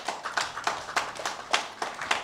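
A few people clapping, about six claps a second: brief applause from the audience.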